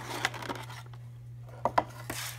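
Toy packaging being handled: rustling with a few sharp clicks, two of them close together near the end.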